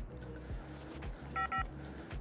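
Two short electronic beeps from a door-entry intercom keypad as its buttons are pressed, about one and a half seconds in, over background music.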